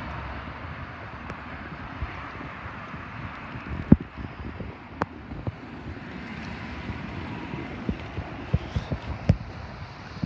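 Steady outdoor background noise with wind on the microphone, broken by a few sharp knocks and clicks, the loudest about four seconds in and again near the end.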